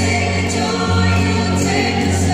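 A group of voices singing a slow hymn together in long held notes, with the note changing twice.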